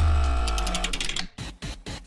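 Transition sting for a news bulletin: a deep bass hit under a held electronic chord that fades out over about a second, then a few short, sharp ticks.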